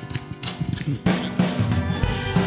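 Live church worship band starting an upbeat gospel song intro, a drum kit keeping a steady beat under bass and other instruments. The band gets fuller and louder about a second in.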